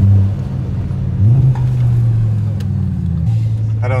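Audi RS6 C6's twin-turbo V10 heard from inside the cabin, pulling uphill. The engine note dips at the start, climbs again a little over a second in, then holds steady.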